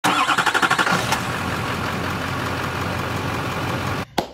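Engine sound effect for a logo intro: a rapid, evenly pulsing engine note for about the first second, then a steady rush of engine noise.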